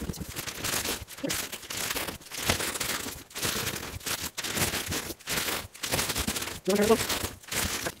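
Newspaper being crumpled and stuffed by hand into the gaps around a box inside a cardboard shipping box: a run of paper crinkling and rustling, broken by short pauses.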